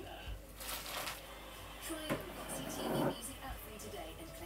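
Television advert audio playing in the room: a voice with music, with a click about two seconds in and a short, louder noise about three seconds in.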